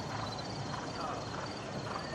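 Horse cantering on sandy arena footing: muted hoofbeats over a steady outdoor background.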